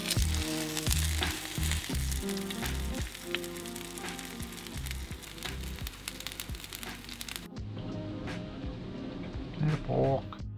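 Fish cakes frying in hot oil in a pan, a steady sizzle that cuts off about three-quarters of the way through, under background music.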